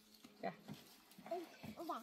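A few short, quiet vocal sounds a second or less apart, the last one rising in pitch near the end.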